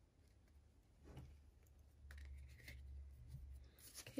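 Near silence with faint rustles and a few light clicks as oracle cards are handled and one is drawn from the deck.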